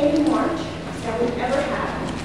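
A woman speaking steadily into a cluster of press microphones.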